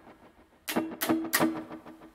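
Guitar struck three times in quick succession, starting about two-thirds of a second in, with the notes ringing on afterwards.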